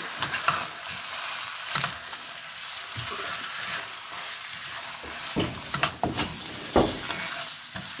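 Chicken pieces with carrots, potatoes and shiitake mushrooms sizzling as they fry in a pan, stirred with a silicone spatula that scrapes and knocks against the pan now and then, with a few louder knocks after about five seconds.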